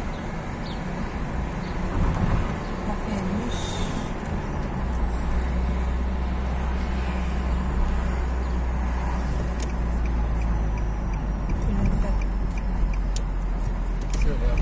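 Car interior noise while driving at low speed on a city street: steady engine and tyre rumble that deepens about five seconds in. A light, regular ticking starts about ten seconds in.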